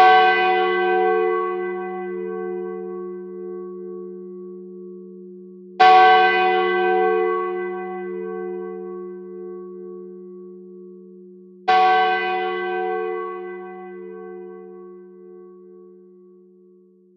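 A church bell struck three times, about six seconds apart. Each stroke rings on and dies away slowly, its low hum carrying over into the next.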